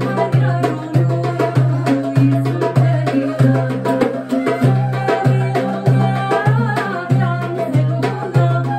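Live folk music: an oud and a wooden end-blown flute playing the melody with a woman's singing voice, over a goblet drum (darbuka) keeping a steady beat of deep strokes about twice a second.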